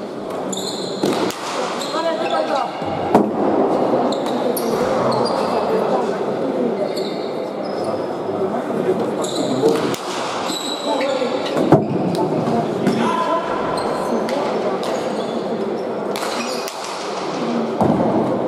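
A pelota ball being struck and bouncing off the walls and floor of an indoor court: about half a dozen sharp cracks, spaced a few seconds apart, each ringing out in the hall's echo, over steady crowd chatter.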